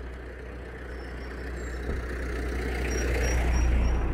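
A motor vehicle running: a steady low engine rumble with road noise, growing louder toward the end.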